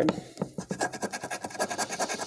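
A coin scraping the scratch-off coating from a paper lottery ticket in quick, repeated strokes.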